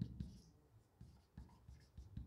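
Faint scratching and light taps of a marker writing on a whiteboard.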